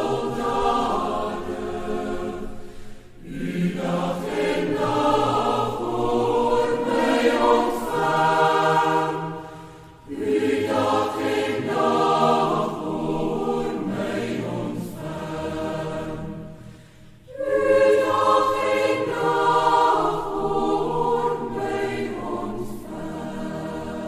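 Choir singing, in long phrases with short breaks about three, ten and seventeen seconds in.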